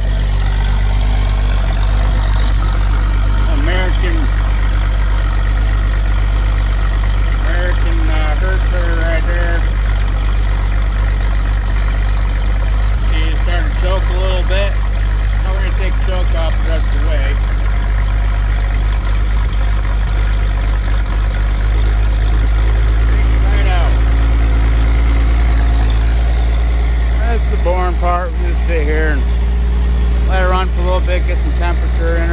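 1980 Chevy K20's 292 straight-six running at a steady idle, warming up after a cold start on the manual choke with the choke pushed partly in.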